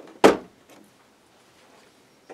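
A single sharp plastic knock about a quarter of a second in, from a small plastic toy gun being pressed onto its mounting peg on a plastic railing.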